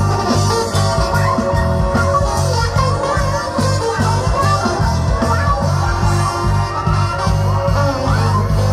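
Live blues-rock band playing from a festival stage: guitar over a steady, repeating bass line and drum beat.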